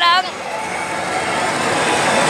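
Steady din of a pachislot parlor: a dense wash of machine noise with faint voices mixed in.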